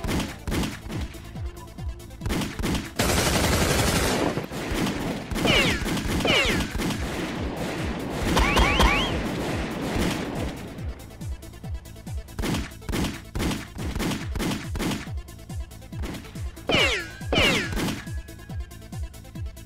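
Movie-shootout gunfire: repeated handgun shots in quick succession, with several falling whines, over a driving music score. A loud burst of noise comes about three seconds in.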